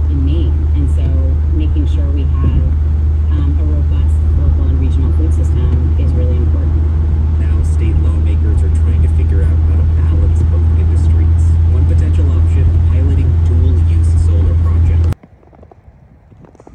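Steady low drone of a car driving on a wet highway, heard from inside the cabin, with indistinct muffled voices over it. It cuts off suddenly near the end.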